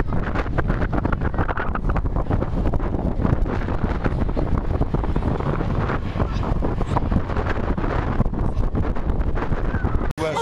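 Wind buffeting a phone's microphone: a loud, steady, low rumble with constant crackly gusts that covers everything else.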